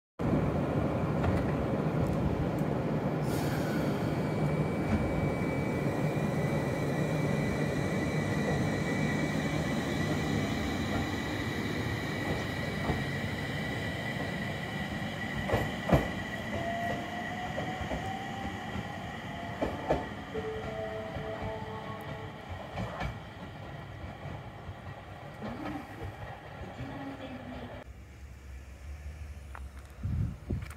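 A JR East 701 series electric train pulling away from the platform, its wheel and running noise fading steadily as it draws off. A steady high squeal from the wheels runs through the first half, with a few clicks from the wheels on the rails.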